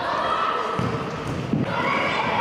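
Echoing sports-hall hubbub of young players' voices with a few ball thuds, rising into shouting and cheering near the end as a penalty goes in.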